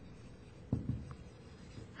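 Marker writing on a whiteboard: faint scratchy strokes, with one sharper tick about three-quarters of a second in.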